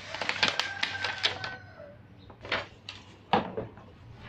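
Handling noise: a paper manual rustling and being put down, then three sharp clicks and knocks as a plastic-bodied angle grinder is picked up and handled.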